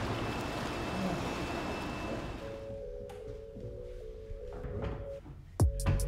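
Water swishing and splashing in a swimming pool for the first couple of seconds, fading out. Soft, steady music tones follow, and near the end a loud, deep boom falls in pitch.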